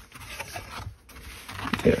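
Hands opening a cardboard coin album and handling its pages: a low rustling and rubbing of card and paper, with a short pause about a second in.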